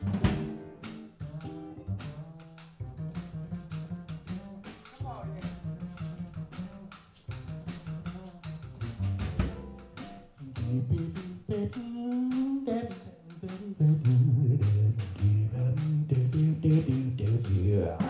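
Live band playing: upright double bass stepping through low notes under a drum kit keeping steady time, with electric guitar. A man's voice sings wordlessly over it near the middle.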